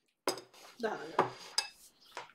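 Cutlery clinking against a plate while eating, with three sharp clinks that ring briefly and some duller clatter between them.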